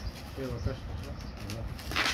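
Plastic bags and plates being handled with light rustling and small clicks, with a brighter rustle near the end, and a short low coo, like a pigeon or dove, about half a second in.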